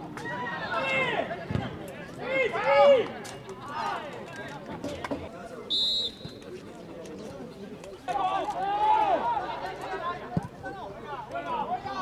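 Men shouting on the pitch and from the sideline during an amateur football match, with a short high referee's whistle blast about six seconds in.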